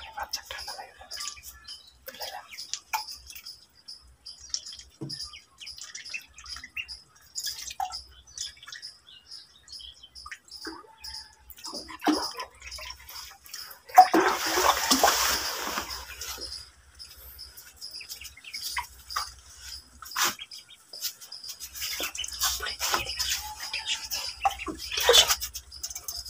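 Ducklings peeping in a rapid, steady run of short high calls. About fourteen seconds in there is a loud burst of water splashing lasting a couple of seconds.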